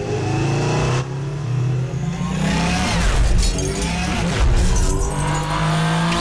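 Designed sci-fi light cycle sounds: electronic engine whines repeatedly glide up and down in pitch as the cycles race past, over a steady low hum.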